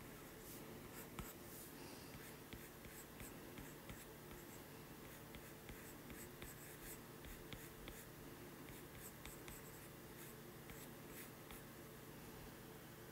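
Faint irregular ticking and scratching of a stylus tip drawing strokes on an iPad's glass screen, over a faint steady hum.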